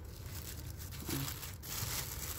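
Black plastic mulch film crinkling and rustling as hands press and tuck it around the trunk of a potted sapling, louder in the second second.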